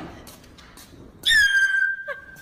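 A high-pitched squeak, about a second long, starting a little past halfway: it dips slightly in pitch, then holds steady. At the start, the tail of a short thud fades out.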